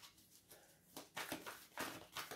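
Faint rustling and light slaps of a deck of cards being shuffled by hand, starting about a second in as short strokes a few times a second.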